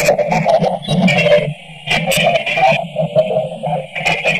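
Heavily processed, distorted logo-intro audio: a loud, chaotic, choppy jumble of warped sounds, with a brief quieter gap about one and a half seconds in.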